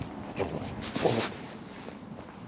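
Footsteps and dogs' paws scuffing and clicking on brick paving during a walk, with a brief vocal sound about a second in.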